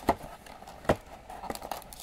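Cardboard trading-card blaster box handled and its end flap worked open, giving two sharp clicks about a second apart, then a few faint ticks and rustles of cardboard.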